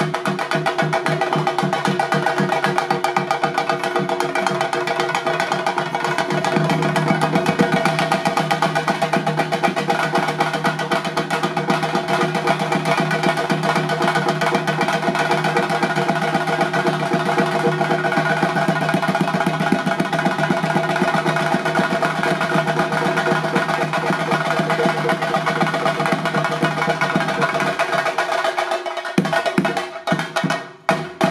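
Chenda drums beaten with sticks in a fast, unbroken barrage of strokes, with a steady ringing note above the beats; the low end thins out just before the end.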